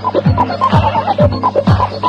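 Electronic dance music from a DJ set: a kick drum falling in pitch on every beat, a little over two beats a second, under short synth stabs, with a brief warbling figure about midway.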